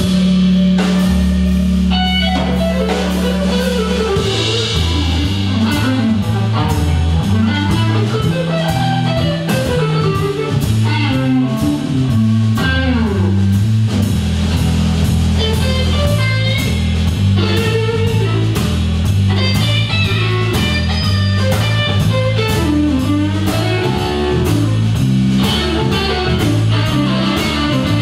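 Live blues band playing an instrumental passage: electric guitar lines with gliding, bent notes over electric bass and a drum kit keeping a steady beat.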